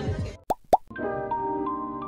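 Background music cuts off, two quick rising pop sound effects follow about a quarter second apart, then a new light tune with struck, bell-like notes begins about a second in.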